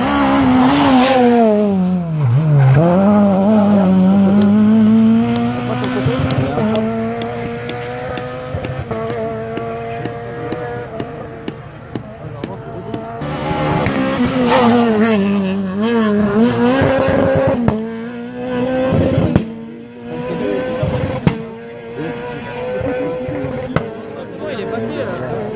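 Rally car engine at full race revs as the car passes close by. The note drops sharply, then climbs again in steps with gear changes as it accelerates away and fades. From about 13 seconds in an engine revs hard again through several gear changes, rising and falling, before easing off near the end.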